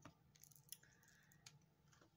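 Near silence, with a few faint clicks, the clearest about two-thirds of a second in.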